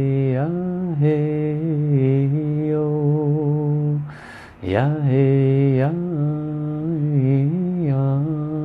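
A man chanting solo in long held vowel notes, his pitch bending gently up and down, with a quick breath about four seconds in before the next long note.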